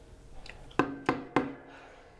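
Three sharp struck hits, each followed by a brief pitched ring, coming about a third of a second apart near the middle.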